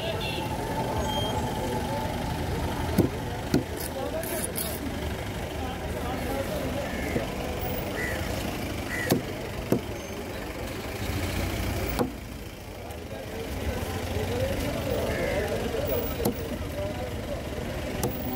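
Busy market background: voices talking in the background over a steady low engine rumble. A handful of sharp knocks, as of a blade or fish striking the wooden cutting table, stand out.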